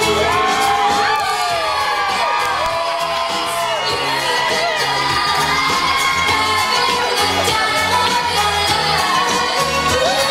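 Dance music with a steady beat, loud, with a crowd of guests cheering and whooping over it and clapping along.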